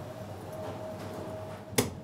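Quiet room tone with a faint steady hum, broken by a single sharp click near the end.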